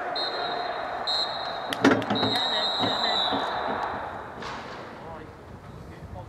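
Referee's whistle blown three times, two short blasts and then a long one, the usual signal for the end of a half. A single sharp thump comes just before the long blast, with players' voices underneath.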